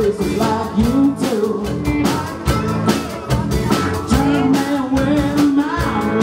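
Live rock band playing electric guitars, bass guitar and drum kit, with a steady beat and a sustained, gliding melodic lead line.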